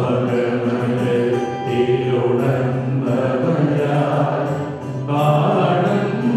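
Church choir singing a hymn into microphones with electronic keyboard accompaniment, the voices holding long notes.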